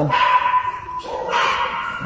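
Excited pit bull–type dog whining, eager for treats: a high, steady whine lasting about a second, then a short noisy yelp about halfway through.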